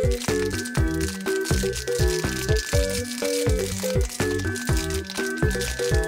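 Upbeat background music with a steady beat, over the crinkling of a foil wrapper being unwrapped by hand.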